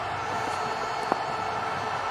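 A single sharp crack of a cricket bat striking the ball, about a second in, over the steady background noise of the ground.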